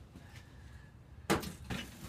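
A sharp clattering knock a little over a second in, followed by a lighter knock just after, over quiet room tone.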